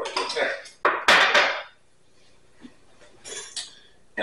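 A kitchen knife and metal dishes clinking and clattering. There is a sharp knock, then the loudest clatter about a second in, and a shorter rattle near the end.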